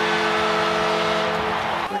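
Arena goal horn blowing a steady, held chord over a cheering crowd after a goal. The horn stops just before the end.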